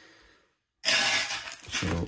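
Foil trading-card pack wrapper crinkling loudly as it is handled, starting abruptly just under a second in after a moment of dead silence.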